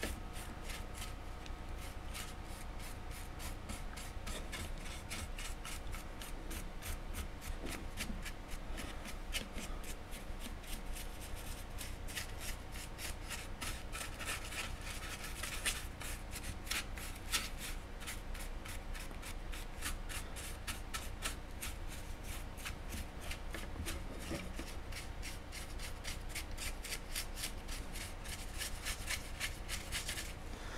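A small paintbrush dabbing and scrubbing paint into the textured base of a model tree, close to the microphone: a steady run of quick, dry brush strokes, several a second.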